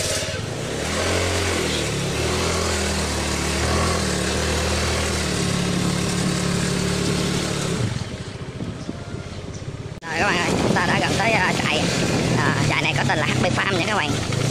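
Motor scooter engine pulling away and riding at low speed, its note rising and falling with the throttle. About ten seconds in the sound changes abruptly to a rougher riding sound with the engine lower in the mix.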